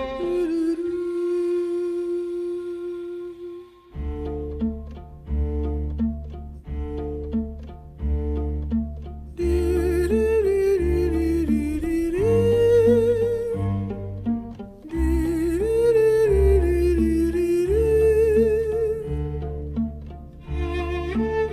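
Film-score string music. A single bowed note is held, then from about four seconds in a repeating low bass pulse starts under a bowed melody with vibrato. The texture fills out with higher strings about halfway through, with a brief drop-out near the three-quarter mark.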